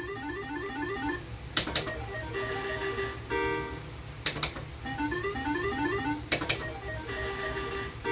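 Arcade slot machine's electronic sound effects: repeated runs of short beeps stepping upward in pitch, with held chiming tones between them and three sharp clicks spaced about two seconds apart.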